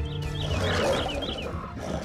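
A bear and a wolf growling at each other as they clash, loudest from about half a second to a second and a half in, over background music.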